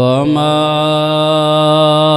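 A man's voice chanting one long held note, with a slight upward slide at the start and then steady.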